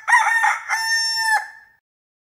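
A rooster crowing once: a few short broken notes, then one long held note that stops about one and a half seconds in.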